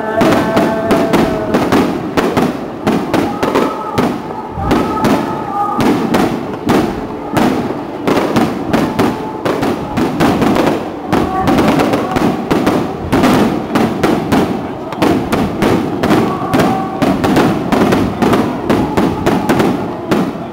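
Fireworks bursting overhead in a rapid, unbroken string of bangs, several a second, with a crowd's voices underneath.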